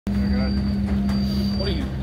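A steady low machine hum, with a faint high-pitched whine that stops near the end, under faint voices.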